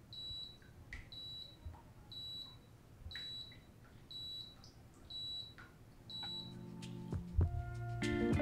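Tekno TDW-7000TIX dishwasher's end-of-cycle signal: a short, high-pitched beep repeated about once a second, seven times, signalling that the wash cycle is done. Music fades in near the end.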